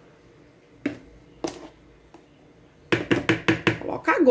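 A spoon knocked against the rim of a stand mixer's bowl to shake off cocoa powder. There are two single knocks about half a second apart, then a quick run of about eight knocks near the end.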